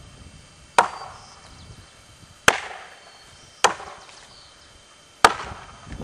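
Four strokes of a chopping axe into an upright block of wood, each a sharp crack with a short fading tail, coming irregularly one to two seconds apart.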